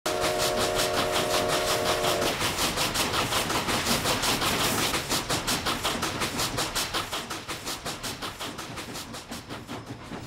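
Steam locomotive sounding its multi-note whistle for about two seconds while the exhaust chuffs in a fast, even beat. The beat runs on alone after the whistle stops and grows fainter in the second half.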